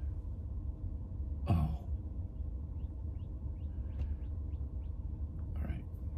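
Low steady hum inside a Tesla Model X cabin, with a short spoken "oh" about a second and a half in. Faint short rising chirps repeat through the middle, and there is a faint tick around four seconds.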